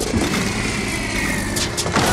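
A small propeller biplane's engine running, its whine slowly falling in pitch as the plane comes down to a rough landing.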